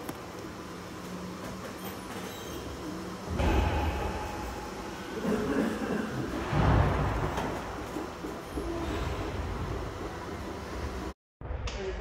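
Go-kart running: a steady low hum at first, then a louder rumbling drive noise from about three seconds in that swells and falls several times as the kart pulls away. Near the end the sound cuts out for a moment, and after that come a few knocks and clatter.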